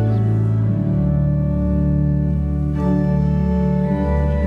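Church organ playing a hymn in slow, held chords, changing chord about a second in and again near the three-second mark.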